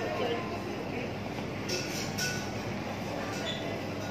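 Busy covered-market ambience: a steady wash of many indistinct voices and bustle. There are a few brief sharp clicks about two seconds in.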